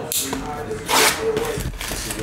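Shrink-wrapped cardboard trading-card box being picked up and handled, its plastic wrap rustling and scraping in two short bursts, one right at the start and one about a second in.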